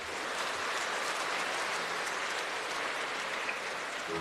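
Congregation applauding, a steady clatter of many hands.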